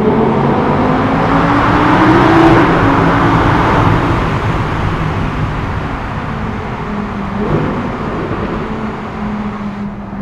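Audi R8 V10 Plus's naturally aspirated V10 under hard acceleration, heard from inside the cabin. The engine note climbs in pitch and loudness to a peak about two and a half seconds in, then settles lower and fades gradually as the car eases off.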